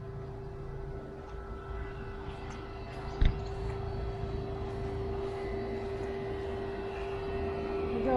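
A steady mechanical drone holding one unchanging pitch over a low rumble, with a single thump about three seconds in.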